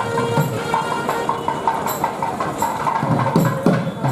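Temple procession music: a wind instrument holding a sustained, shifting melody over irregular drum strokes.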